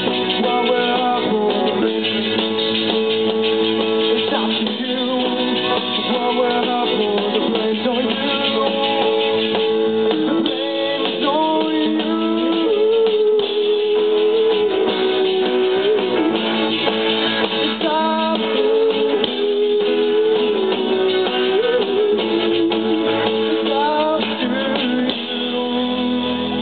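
Live rock band playing an instrumental passage: electric guitars with sustained lead notes that bend up in pitch, over keyboard, bass and drums. The music dips slightly near the end.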